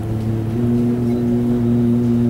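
A young man's voice chanting Quran recitation (tilawah), holding one long, steady note.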